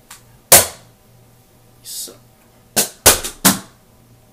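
Hard plastic cracks of Rubik's Cubes being thrown: one loud crack about half a second in, a short swish near two seconds, then a quick run of four cracks near the end.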